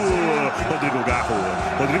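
Football radio commentator's voice in a goal call, over background music.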